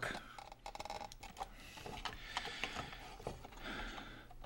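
Faint clicks from hands handling a small electronic device and its wires on a workbench, with a short fast rattle of clicks about half a second in.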